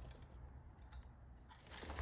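Faint crackling of a woven wicker fishing creel being handled as wire is pushed through its weave, over a low hum.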